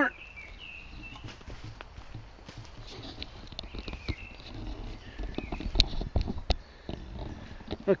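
Camera being picked up and carried while walking through woodland undergrowth: handling knocks, rustling and footsteps, with a few sharper knocks about six seconds in. Faint high chirping calls are heard near the start and again about four seconds in.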